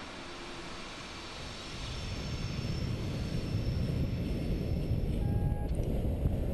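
Steady rushing of wind over a paraglider's helmet-mounted camera in flight, swelling about two seconds in and deepening into a low rumble.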